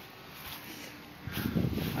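Quiet outdoor background, then about a second in an irregular low rumbling buffeting on a handheld phone's microphone, the kind wind or handling makes.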